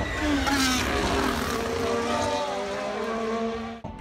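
Race car engines passing at speed: a loud rush with the engine note dropping as the cars go by, then running steadily before cutting off abruptly near the end.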